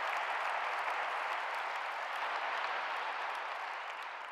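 Audience applauding: a steady, even patter of many hands clapping that eases a little near the end.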